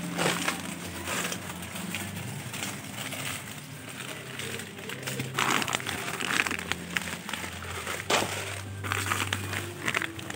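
Shopping cart being pushed along, its wire basket rattling, with a low steady hum and crinkly clattering that peaks sharply about halfway through and again near the end.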